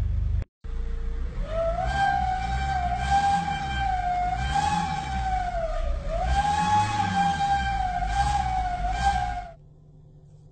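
A loud, steady high whine from a stationary car with its engine running, over the low running of the engine. The whine wavers slightly in pitch, sags once about six seconds in and comes back. It stops abruptly about half a second before the end.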